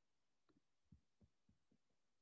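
Near silence, broken by five faint, soft taps.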